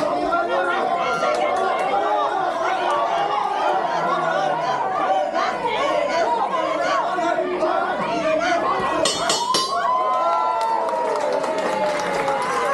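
Boxing crowd shouting and talking over one another, a dense, steady din of many voices, with a short high rattle about nine seconds in.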